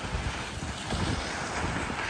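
Wind buffeting the microphone: a steady rushing hiss with low rumbling gusts.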